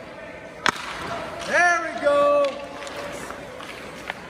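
A single sharp crack of a hockey stick striking a puck on a shot, about two-thirds of a second in. About a second later comes a loud two-part shout.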